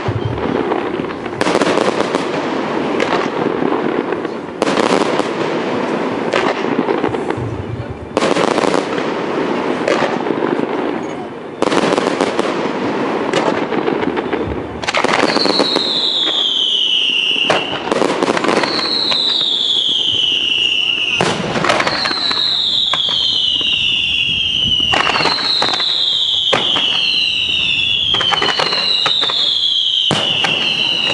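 Fireworks display: loud bangs with crackling tails every two to three seconds. From about halfway, a run of falling whistles, one every couple of seconds, sounds over continued crackle and bangs.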